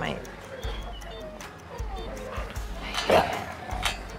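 A German Shepherd's laboured, noisy breathing, each breath taking extra effort, with a louder breath about three seconds in. It is the sign of tick paralysis weakening his breathing. Soft background music plays underneath.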